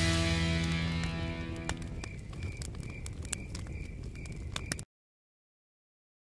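The last chord of an advertisement's music dies away, leaving campfire crackles and a short, repeated chirp two or three times a second, like night insects. The sound cuts off suddenly near the end.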